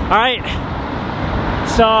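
Steady noise of road traffic passing close by on a bridge, with a brief gliding shout from a voice at the very start and talking beginning near the end.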